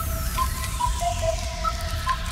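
Hip-hop beat starting up: heavy bass under a simple high synth melody that steps between a few held notes, with a falling whoosh sweep across the top.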